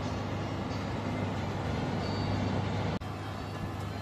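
Steady hum of an electric oven's fan running with the door open. The hum breaks off for an instant about three seconds in.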